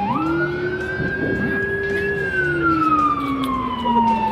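Emergency vehicle siren wailing: its pitch rises quickly at the start, holds for about two seconds, then falls slowly, starting to climb again just after.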